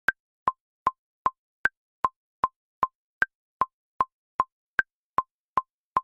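Electronic metronome click counting in at about two and a half beats a second. Every fourth click is higher-pitched, an accent marking the first beat of each bar.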